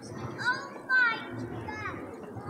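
Children's voices calling out in a crowd, with two high, sliding cries about half a second and a second in.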